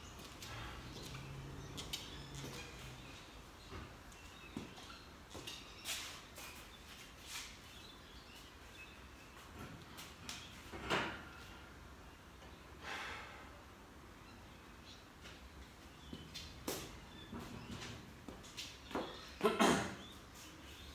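Quiet room tone broken by scattered faint knocks and rustles as a lifter moves about a squat rack and sets up under a barbell. A louder knock comes about eleven seconds in, and a sharper sound just before the end.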